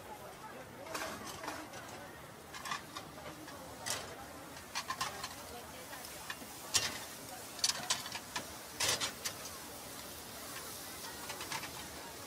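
Metal spatulas clacking and scraping on a flat-top griddle of meat, with a quick run of sharp clacks in the second half, over the chatter of a crowd.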